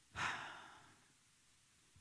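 A man's single audible exhale, a short sigh, just after the start, fading away over about half a second; the rest is near silence.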